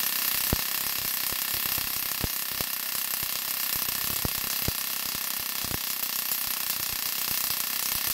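Large Tesla coil sparking: a steady high-pitched hiss with sharp snaps at irregular moments as its streamers discharge into the air.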